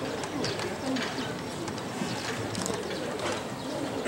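Quiet outdoor ballpark ambience: players' cleated footsteps on the infield dirt as they line up, with faint distant voices.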